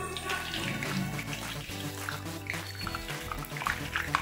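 Background music over hot oil sizzling and bubbling as a bhatura deep-fries and puffs up in a kadai.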